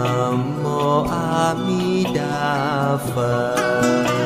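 Buddhist devotional music: a slow chanted melody over plucked strings.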